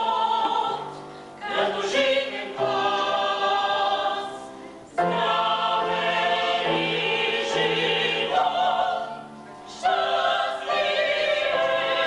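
Choral music: held sung chords in long phrases, with short pauses between them.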